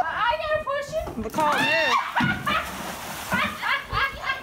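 A plastic kayak sliding off a wooden dock into a lake with a splash and wash of water, under excited voices of onlookers calling out.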